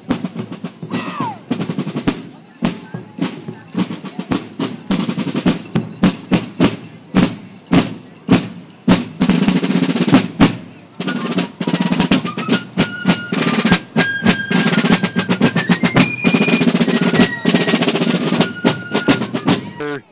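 Fife and drum corps marching past: snare and bass drums beat a marching cadence alone, and fifes join in with a high melody about halfway through.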